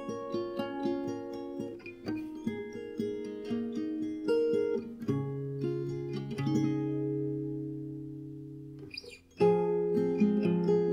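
Fingerstyle playing on a capoed Simon & Patrick Woodland Pro folk acoustic guitar, with fingernail noise on the attacks. Picked notes give way at about six and a half seconds to a chord left ringing and slowly fading, a brief pause, then the picking starts again louder near the end.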